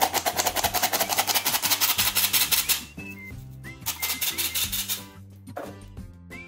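Hand-operated metal flour sifter worked over a bowl, its mechanism giving rapid, even rattling clicks: a run of about three seconds, then a shorter run about four seconds in.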